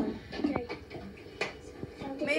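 Quiet, broken voice sounds with a couple of light clicks, played back through a laptop speaker.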